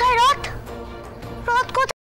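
A child's high-pitched voice calling out in two short bursts over background music. The first burst is at the start and the second about one and a half seconds in; the sound cuts off abruptly just before the end.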